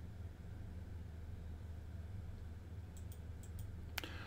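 Computer mouse clicks: a few faint light clicks about three seconds in, then one sharper click near the end that opens a browser menu, over a steady low hum.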